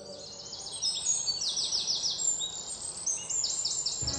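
Small birds chirping: quick runs of short, high, downward-sweeping chirps, several to a run, over a faint background hiss.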